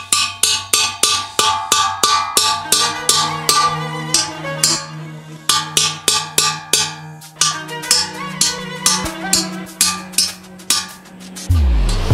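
Hammer striking a steel drift seated in a hole in the steel lid of a homemade gas-cylinder autoclave, knocking the hole true: rapid ringing metal-on-metal blows, about three or four a second, with a couple of short pauses. Music comes in right at the end.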